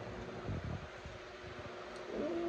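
Steady low hiss of background room noise, with a brief low rumble about half a second in.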